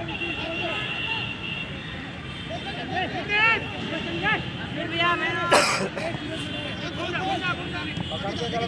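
Scattered shouts and calls from football players and onlookers on an open pitch, short voices overlapping over a steady background noise. A single sharp thud comes about five and a half seconds in.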